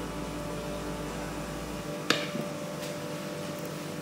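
Steady low background hum, like a fan or appliance, with a deeper rumble that stops about halfway through. A single light click just after it stops, and a fainter one a second later.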